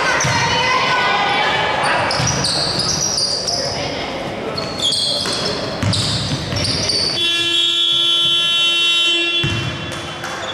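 Basketball bouncing and sneakers squeaking on a hardwood court, then the end-of-quarter horn sounds as one steady tone for about two seconds near the end and cuts off.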